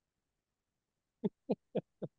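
A person laughing briefly, a quick run of short 'ha' sounds about four a second, starting after a second of near silence.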